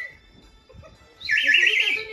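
A toy whistle blown in a loud warbling trill, starting a little past halfway.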